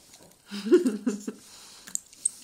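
A short burst of laughter from about half a second to just past one second in, over small clicks and rustles of hands handling a plastic toy capsule and a paper leaflet, with a sharper click near the end.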